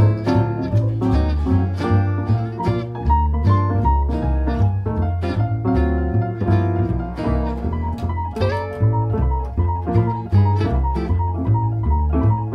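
Small jazz combo playing swing with no vocal: an electric archtop guitar solos in quick single-note runs over a walking upright bass, with piano behind them.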